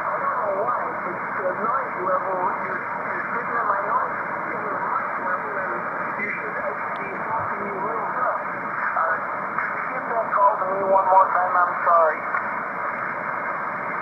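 A weak amateur-radio voice on the 40-metre band (7.268 MHz) coming through a speaker, half-buried in static and hiss. The receiver's filter cuts the audio off sharply above about 2.4 kHz. The signal fades up and down and comes through stronger near the end, while the Heil Parametric Receive Audio System equalizer shapes it to pull the voice out of the noise.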